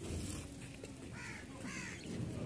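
A crow cawing twice, faintly, over low background noise.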